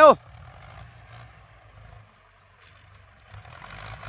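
Two farm tractors' diesel engines running as they drive over ridged soil, heard as a faint low rumble that dips about two seconds in and picks up again near the end.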